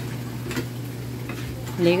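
Cast-iron hand lever water pump being worked, a few short clanks of the handle over a steady hiss. A voice comes in at the very end.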